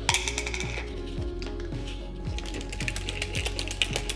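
Rapid, irregular clicking and rattling of plastic supplement tubs and a shaker bottle being handled, with lids twisted open, over quiet background music.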